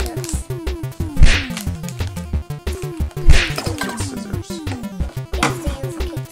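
Background music with a steady beat and a repeated falling figure, cut by two loud, sharp hits about a second in and about three seconds in, and a weaker one near the end.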